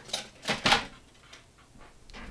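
A few short clicks and knocks as small craft tools are handled on a tabletop while an eraser is picked up, three in the first second, the loudest about three quarters of a second in.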